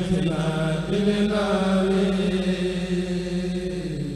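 Male voices chanting a khassida, an Arabic devotional poem, through a microphone. A melodic line moves over a steady held low note. Near the end the upper line fades and the low note carries on.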